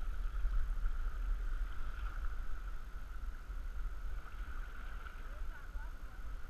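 Steady low rumble of wind on the microphone over the wash of river water around a moving canoe, with a thin high tone held steady underneath.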